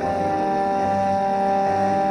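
Instrumental passage of a hip-hop song with no vocals: sustained, held tones, with a new long note coming in at the start and holding steady.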